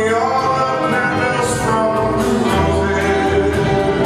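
A male baritone singing a jazz vocal through a microphone with a big band behind him: horns, piano, guitar and double bass.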